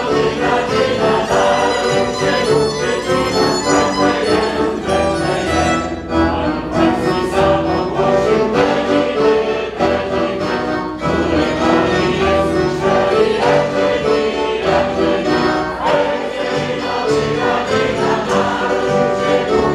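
Many voices singing a Polish Christmas carol together, stage singers and a seated audience joined as one choir, accompanied by violin, accordion and acoustic guitar.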